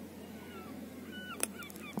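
Faint, distant bird calls, a few short calls that glide in pitch, over quiet outdoor background, with a single brief click past the middle.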